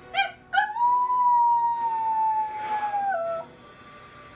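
A Shiba Inu gives a short yip, then one long howl whose pitch slowly sinks and steps down just before it stops, about three and a half seconds in.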